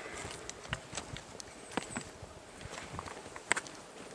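Footsteps on a rocky dirt trail: irregular crunches and clicks of boots on stones and grit.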